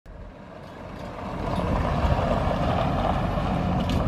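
Pickup truck's 5.3-litre V8 running, with wind buffeting the microphone; the sound swells over the first second and a half and then holds steady.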